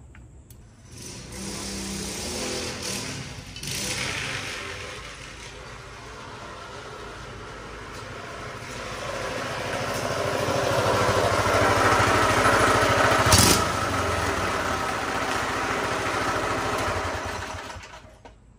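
Predator 212cc single-cylinder four-stroke engine on a converted dirt bike running and revving under load, growing louder toward the middle, with a sharp click about thirteen seconds in. Its torque converter belt is working hard and smoking under the strain.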